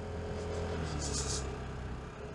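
Vespa GTS scooter's single-cylinder four-stroke engine running steadily at low speed, with a short hiss about a second in.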